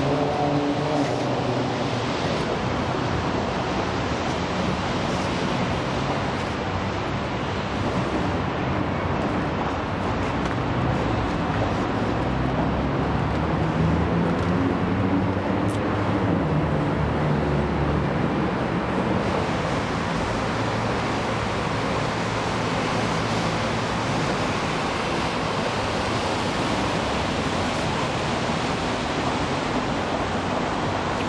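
Steady city street traffic: a continuous wash of car engine and tyre noise, with a lower engine hum swelling and growing a little louder around the middle.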